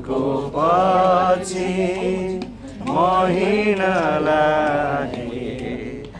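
Voices singing a Nepali hymn in slow, drawn-out phrases, with a steady low held tone underneath.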